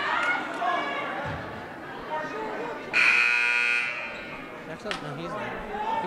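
Gymnasium scoreboard horn sounding once for about a second, starting suddenly halfway through, over murmuring crowd voices in the gym.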